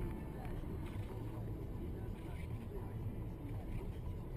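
Steady low rumble of a car moving at speed, heard from inside the cabin, with a person's voice over it.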